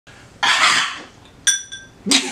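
A short loud hissing whoosh, then about a second later a single bright metallic ding that rings briefly and fades.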